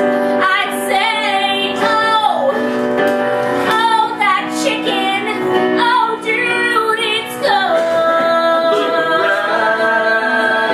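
A woman singing, with digital piano accompaniment. She holds one long note over the last couple of seconds.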